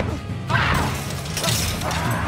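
Film fight sound effects: a sharp crash about half a second in, then a harsh, hissing burst, over a low sustained music score.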